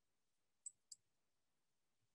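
Near silence broken by two faint, short, high clicks about a quarter second apart, about two-thirds of a second in.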